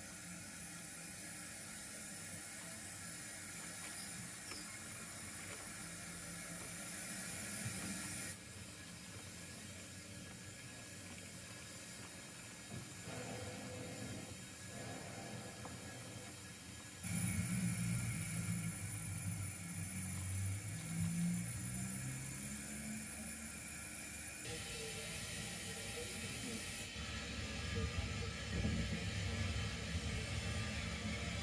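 O gauge model steam locomotive and tender running slowly along the track: a steady hiss with a low rumble of wheels and motor, which gets louder from about halfway through as the engine comes close.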